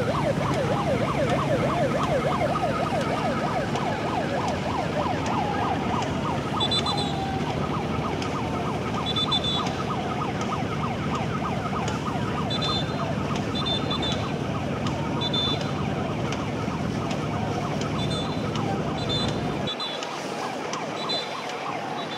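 A boat engine runs steadily under a fast, warbling, siren-like tone. Short high chirps come and go above it. The engine hum drops away near the end.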